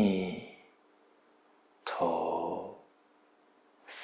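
A man's voice slowly chanting the Buddha's name (nianfo), drawing out one breathy syllable about every two seconds with pauses between.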